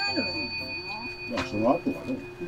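A bell-like ringing tone with several high overtones, struck just before and held steadily, its lowest tone dying away about a second in, under people talking.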